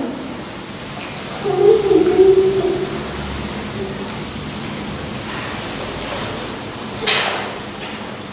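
A single voice holding a long, slightly gliding note about a second and a half in, over a steady hiss, with a short noisy burst about seven seconds in.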